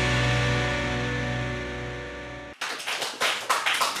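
Short TV quiz-show transition jingle: a held musical chord that slowly fades and then cuts off suddenly about two and a half seconds in. It is followed by a quick irregular patter of sharp claps.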